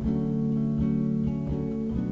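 Acoustic guitar strumming chords in a steady rhythm, with no singing.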